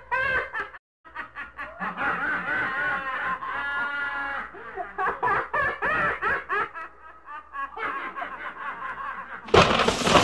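A woman laughing in repeated giggling bursts, with a short break just before one second in. Near the end a sudden loud hiss-like rush of noise cuts in.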